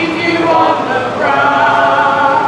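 Unaccompanied a cappella singing of a ballad: held sung notes with no instruments.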